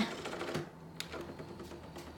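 The open/close button of a Panasonic MD mini stereo system being pressed to slide open its motorised CD front: faint mechanical noise with one sharp click about a second in.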